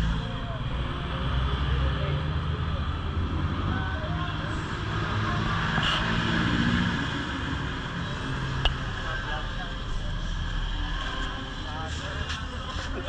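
A motorcycle engine idling steadily, with voices in the background and a single click near the end.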